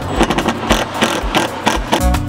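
Quick, irregular knocks and clatter from the metal frame of a roof rack being put together by hand.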